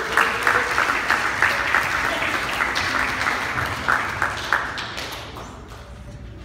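Congregation applauding in dense, steady clapping that fades out over the last second or so.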